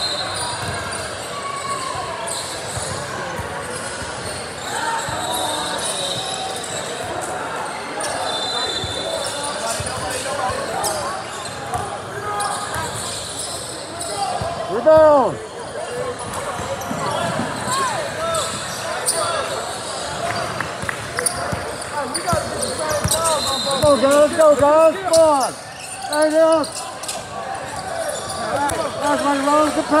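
Basketball bouncing on a hardwood gym floor amid spectators' voices, echoing in a large hall, with louder bursts near the middle and over the last few seconds.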